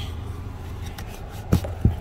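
Two short knocks about a third of a second apart in the second half, over a steady low hum: handling noise as a hand and phone bump around the pedals and trim under the dashboard.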